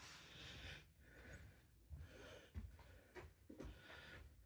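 Near silence, with faint breaths close to the microphone and a few soft low bumps from handling.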